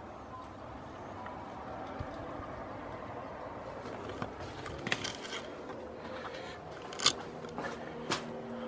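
Footsteps and handling noise on a debris-strewn wooden floor: a few scattered crunches, scrapes and knocks from about halfway through, the loudest a sharp knock near the end, over a steady faint outdoor hiss.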